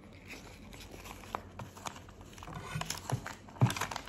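Paper rustling and crinkling as a small paper notebook is handled and its pages lifted, with scattered light clicks and one sharper tap a little before the end.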